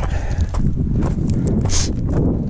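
Footsteps crunching on a gravel and dirt trail while walking downhill, with a steady low wind rumble on the microphone. A brief scraping hiss comes near the end.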